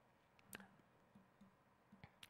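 Near silence, with one faint click about half a second in and a few fainter ticks after it, from keystrokes on a laptop keyboard.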